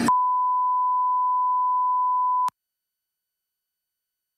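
A censor bleep: one steady beep tone about two and a half seconds long that cuts off abruptly, masking profanity in the interrogation recording.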